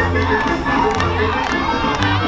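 Many voices shouting and cheering, short calls that rise and fall in pitch, over a band playing a son with a deep bass note about once a second.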